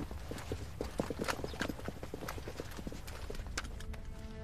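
Hard steps clattering on stone paving, several sets overlapping at a few a second, stopping just before the end.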